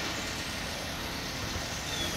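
Steady outdoor background noise between sentences: an even low rumble with a hiss above it, holding at one level throughout.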